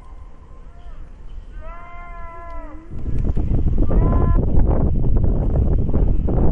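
A short high-pitched call with several overtones, bending slightly in pitch, about two seconds in, and a shorter one around four seconds. From about halfway, loud gusting wind rumbles over the microphone.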